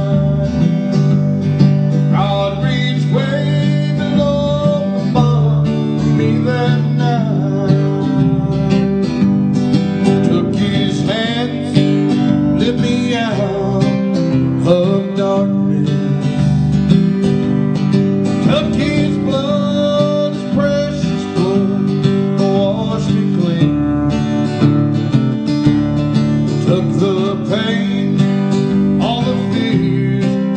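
Acoustic guitar strummed steadily in a live song, with a man's voice singing over it.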